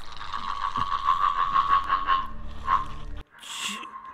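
A boy's voice making a strange, inhuman croaking rattle, a fast steady pulsing several times a second that fades to a held tone and cuts off abruptly a little past three seconds in.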